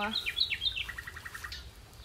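A small songbird singing: a few quick, high, falling notes, then a fast trill of repeated lower notes about a second in.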